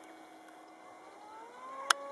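Electric model-aircraft motors and propellers whining faintly overhead, their pitch rising about a second and a half in as the throttle opens. A single sharp click comes just before the end.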